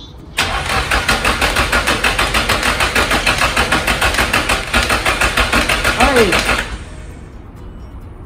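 Starter motor cranking a Nissan SR-series four-cylinder engine in a fast, even rhythm for about six seconds, then stopping without the engine catching. It won't fire even on sprayed parts cleaner, which the owner takes as a sign of no spark rather than a fuel problem.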